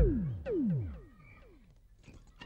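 Comic synthesizer sound effect: a string of falling pitch swoops about half a second apart, each fainter than the last, dying away by about a second and a half in. It is a cartoon-style fall or faint cue for a character collapsing.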